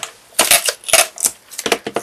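Sticky tape and a paper strip being handled and pressed down on card: a quick, irregular run of crackles and clicks from about half a second in to near the end.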